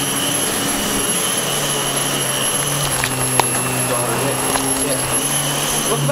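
Dyson DC15 'The Ball' bagless upright vacuum cleaner running steadily, a high motor whine over rushing air. A small click comes about three and a half seconds in.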